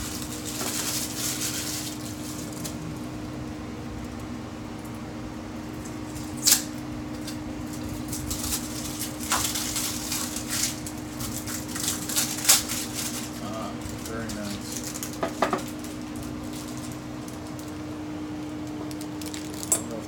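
Small dab accessories being unpacked and handled: packaging rustling and a few sharp clicks and knocks as metal tools and a tool-holder block are set on a tabletop, the loudest clicks about a third and two thirds of the way through. A steady low hum runs underneath.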